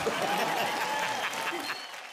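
Studio audience and guests applauding and laughing at a joke, the clapping gradually fading away.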